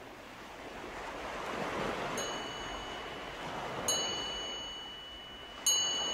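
Ocean-surf sound effect swelling and easing, with three struck chime notes ringing out about two, four and five and a half seconds in: the recorded opening of a song before its piano enters.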